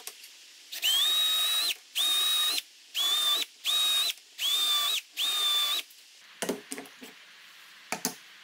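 Keyang cordless drill boring a dowel hole into wood through a jig's guide hole, run in six short bursts of under a second each, its motor whining at a steady high pitch. A few light knocks follow near the end.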